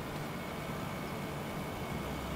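Steady low background noise with a faint high whine from the Orion Teletrack mount's motors as it slews the camera to the next panorama position.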